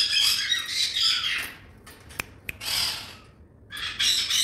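Blue-and-gold macaw squawking in harsh, raspy calls: a long one lasting about a second and a half, then a shorter one near the three-second mark, and another starting just before the end. Two sharp clicks come between the calls.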